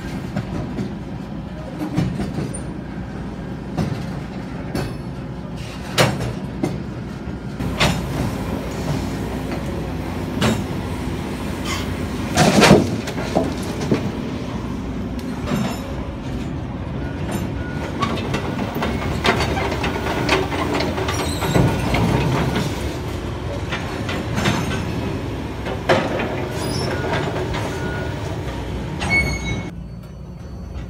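Freight train of CSX tie cars loaded with railroad ties rolling along the track: a steady low rumble of wheels on rail, broken by many clanks and knocks from the cars, with brief wheel squeals. The loudest bang comes about halfway through.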